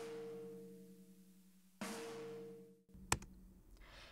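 Snare drum played through a compressor set to zero-millisecond attack. Two hits come about two seconds apart, each a ringing tone with hiss that dies away over about a second. The initial crack of each hit is completely squashed by the instant compression.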